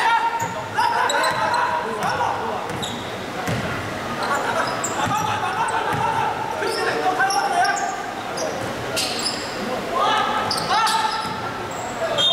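A basketball being dribbled on a wooden gym floor, with players' voices calling out and short high squeaks, all echoing in a large sports hall.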